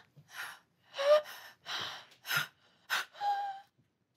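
A person breathing heavily in gasps: about six ragged breaths, some with brief voiced catches, the loudest about a second in.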